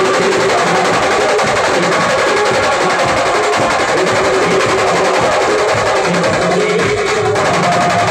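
Loud live Maharashtrian band-pathak music with dense, fast drumming under a held melody line, playing without a break.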